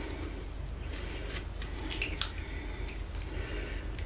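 Faint wet squishing and a few small drips as a soggy, half-dissolved bath bomb is crushed in a wet hand over bathwater, over a low steady hum.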